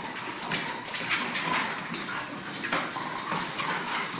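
Feet and paws tapping irregularly on a running treadmill's belt and deck, a quick uneven clatter of steps.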